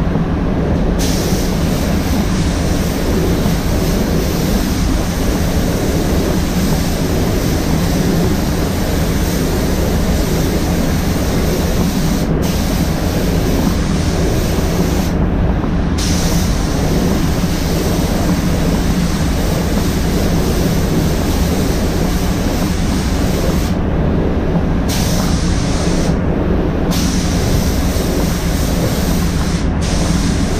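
Paint booth running: steady rumble of the booth's air handling, overlaid with the hiss of a spray gun that stops briefly a handful of times as the trigger is released and resumes.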